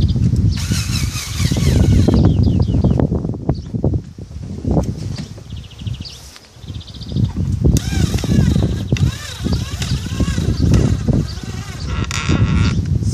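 Cordless drill-driver driving screws into the wooden roof of a swarm trap, its motor whining in short runs about half a second in and again around eight seconds in, over a steady low rumble.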